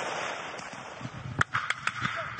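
Wind and rustling noise on a helmet-mounted camera's microphone, then a sharp crack about one and a half seconds in and two lighter clicks just after.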